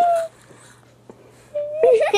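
A person's voice: a short high held note that breaks off, a quiet pause, then another high held note running into laughing chatter near the end.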